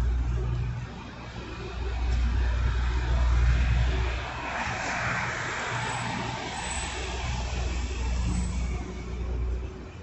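Street traffic: a car passing about five seconds in, over a low rumble that swells and fades several times.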